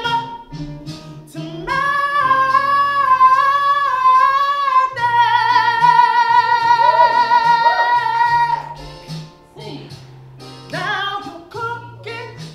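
A woman singing solo in long melismatic phrases over a recorded backing beat. The second phrase is a long held note with vibrato, which ends about three-quarters of the way through. Softer singing follows near the end.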